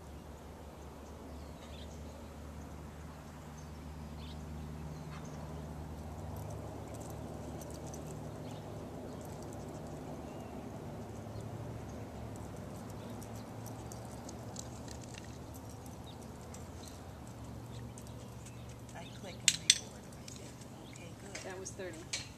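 Outdoor background with a low, steady hum that shifts in pitch a few times, and faint scattered ticks. There are two sharp clicks about two and a half seconds before the end.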